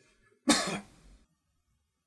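A man gives one short, harsh throat-clearing cough about half a second in.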